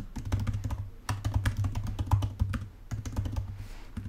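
Typing on a computer keyboard: a quick, uneven run of key clicks as a line of code comment is typed, thinning out near the end.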